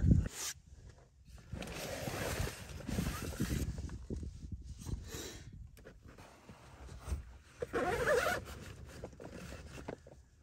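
Rasping and rustling of gear being handled as a rifle is drawn out of a soft rifle case, with the case's zipper running in stretches.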